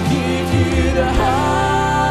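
Live worship band playing: drum kit, electric guitars and bass under a sung melody, with one note held through the second half.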